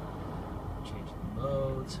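Steady blower noise from the car's air conditioning, with the engine idling, heard inside the cabin.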